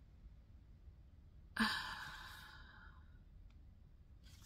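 A woman's sigh: one breathy exhale about a second and a half in, fading away over about a second and a half.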